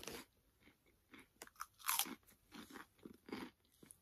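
A person chewing a mouthful of crunchy tomato-flavoured snacks: faint, irregular crunches, the loudest about two seconds in.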